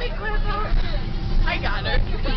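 The steady low rumble of a moving bus, under several voices chattering and laughing in the bus cabin.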